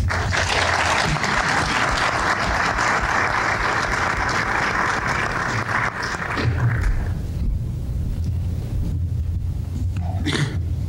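Audience applauding, dying away about seven seconds in.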